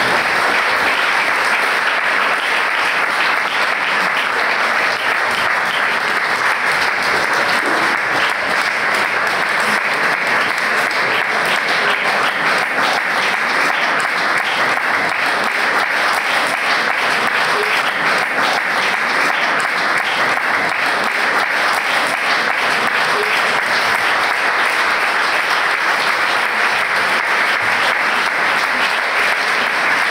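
Concert audience applauding: steady, dense clapping with no pause.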